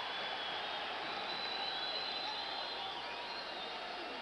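Hockey arena crowd keeping up a steady din during a fight on the ice, with a few faint whistles above it, heard through an old TV broadcast.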